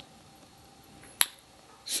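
A single sharp click a little over a second in, over quiet room tone.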